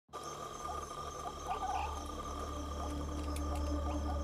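Night-time ambience of insects trilling steadily, with short frog-like chirps scattered through it and a low steady hum underneath.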